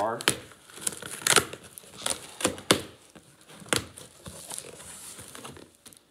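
Packing tape being ripped off a cardboard shipping box and the cardboard flaps crinkling as the box is pulled open: a run of sharp, short rips over the first four seconds or so, then quieter rustling.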